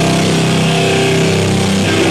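Distorted electric guitar holding one sustained chord through the amplifier, loud and steady, with little drumming under it.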